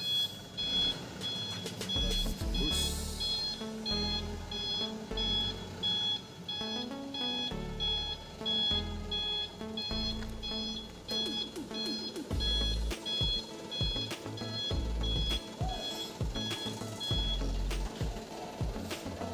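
Reversing alarm of a Mitsubishi Canter light truck, giving a steady series of evenly spaced high beeps that stops shortly before the end, as the truck is manoeuvred backwards. Background music plays underneath.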